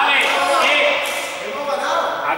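Several people talking at once, a mix of voices with no single clear speaker.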